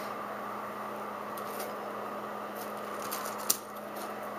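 Faint rustles and ticks of craft supplies being handled and moved aside, with one sharp click about three and a half seconds in, over a steady electrical hum and hiss.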